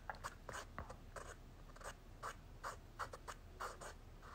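Faint, irregular scratching and rubbing, a dozen or so short scrapes close to the microphone.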